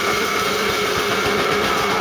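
Live heavy rock band playing loudly: a sustained, heavily distorted chord held over rapid drumming.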